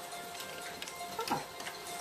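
Aluminium foil crinkling lightly in a few faint clicks as it is peeled off a cooking patty, over quiet background music.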